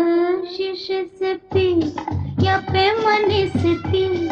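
Hindi film song: a high female voice holds a note, then sings short phrases over orchestral accompaniment, with a bass-and-drum beat coming in about one and a half seconds in.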